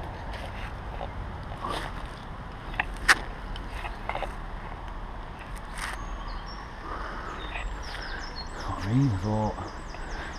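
Footsteps on a bark-mulch and leaf-litter path, with scattered light crunches and a sharp snap about three seconds in. In the last few seconds a bird gives a quick run of high chirps.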